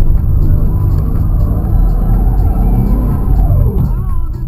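Suzuki Vitara engine heard from inside the cab, revving up and climbing in pitch through the middle, then easing off just before the end, with music playing along.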